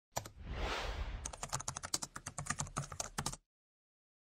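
Computer keyboard typing sound effect: a quick run of key clicks, about eight a second, lasting about two seconds and stopping short before the end. It starts after a brief soft rushing noise.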